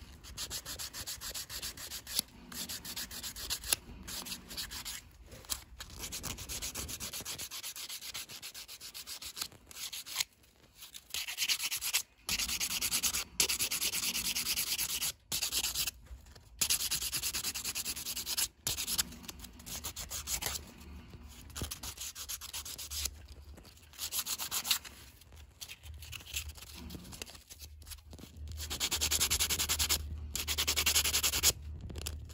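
Walrus ivory being hand-sanded with folded sandpaper: runs of quick back-and-forth scratchy strokes, broken by short pauses.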